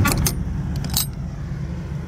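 Sharp metallic clinks from the steel door latch hardware of a semi-trailer being handled, one near the start and another about a second in, over a steady low engine hum.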